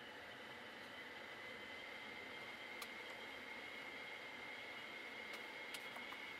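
Faint steady hiss of a car's climate-control blower fan running, with a thin high whine, and a few faint clicks from the control knob and buttons.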